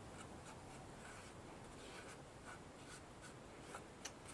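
Faint, brief scratches of a paintbrush dabbing fabric paint onto a craft-foam stamp, over quiet room tone.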